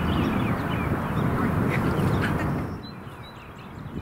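Wind buffeting the microphone with birds calling over it; about two-thirds of the way in the rumble drops off and only quieter outdoor background with a few bird chirps remains.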